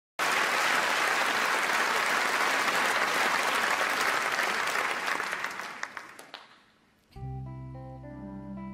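Audience applauding, the clapping dying away over a couple of seconds. About seven seconds in, the orchestra starts the song's introduction with plucked notes over held low notes.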